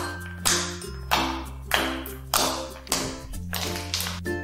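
Fingers poking into thick, glossy slime: a wet squelching pop with each press, about seven in a row, a little under two a second, easing off near the end. Background music plays underneath.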